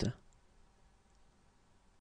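The final 't' of the spoken French word 'huit' at the start, a short click-like release. Then near-silent room tone until the next 'huit' begins at the very end.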